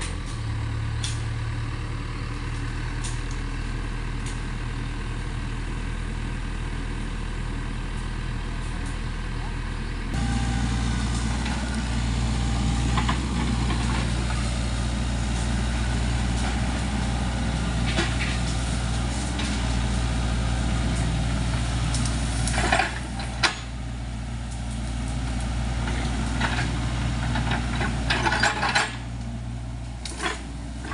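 SANY mini excavator's diesel engine running steadily as it works through brush, getting louder about a third of the way through. Sharp cracks of snapping branches and stems come at several points, clustered about two-thirds of the way through and near the end.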